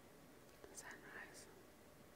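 Near silence with a single faint whispered word, "eyes", about a second in.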